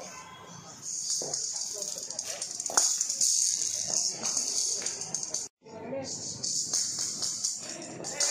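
Jingling rattle of a blind-cricket ball, a hollow plastic ball with metal bearings inside, as it is bowled and rolls along the ground, with a sharp knock about three seconds in as it is struck.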